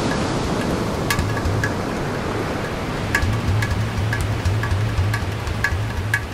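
Rushing water noise under background music with a steady beat: light ticks about twice a second over a pulsing bass.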